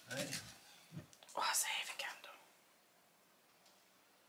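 A small wooden match struck on its box: a short scratch and flare about a second and a half in, after a small knock as the box is handled.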